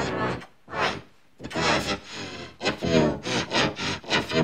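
Heavily effect-processed, pitch-shifted audio: short voice-like phrases with bending pitch, several pitches layered over one another in a rasping chord, coming in bursts with short gaps between them.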